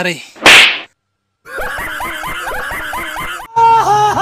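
A single loud slap sound effect about half a second in. After a brief silence comes a rapidly repeating warbling comic sound effect, which gets louder near the end.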